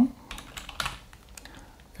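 A few keystrokes on a computer keyboard, typing a short word.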